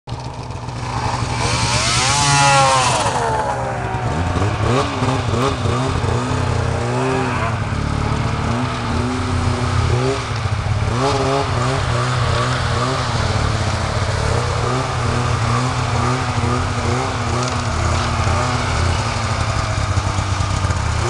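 Two-stroke snowmobile engines. One speeds past with a rising then falling whine about two seconds in. Then a snowmobile engine keeps running with a low drone and is revved in short repeated blips, about one a second.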